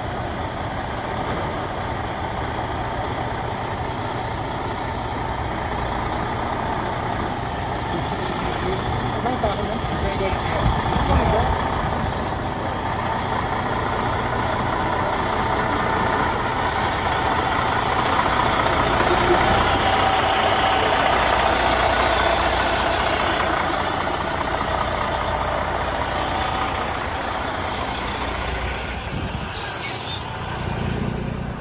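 Diesel semi-truck pulling a trailer, its engine running as it rolls slowly past at close range. It grows louder as the cab goes by and fades as the trailer follows.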